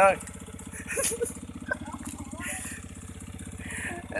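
Motorcycle engine of a homemade four-wheel buggy running at low throttle as the buggy creeps forward, a steady, even rapid putter.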